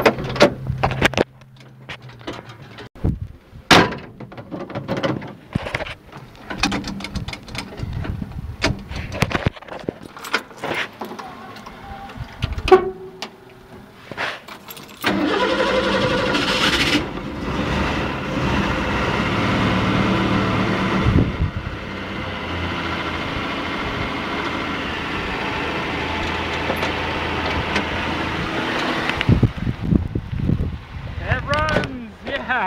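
1961 Ford Ranchero's 170 straight-six, heard from the cab, being started. About fifteen seconds of irregular clicks and knocks, then the engine catches about halfway through, runs loudest for a couple of seconds and settles into a steady run.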